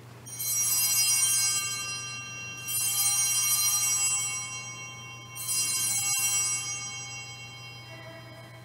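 Altar bells rung three times at the elevation of the consecrated host, about two and a half seconds apart. Each ring is a cluster of bright, high tones that fades away before the next.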